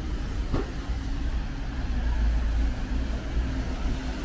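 Low, steady rumble of city street traffic, with a faint engine hum coming in about halfway through.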